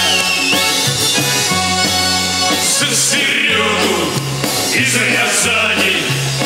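Folk-style song played live on a button accordion with a steady rhythmic bass line; a man's singing voice comes in about three seconds in.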